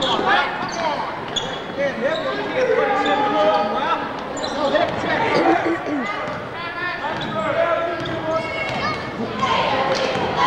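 A basketball bouncing on a gym floor during live play, amid many overlapping voices of players and spectators shouting and calling.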